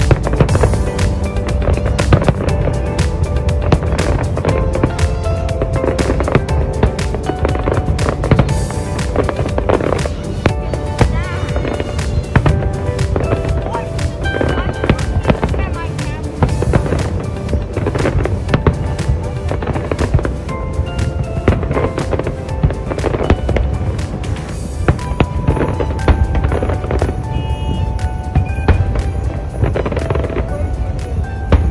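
Fireworks going off in rapid, irregular bangs and crackles over a low rumble, with music playing under them.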